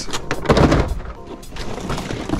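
Boxed toys and a cardboard shipping box being handled and shifted: a scraping rustle about half a second in, with several light knocks of packaging against cardboard.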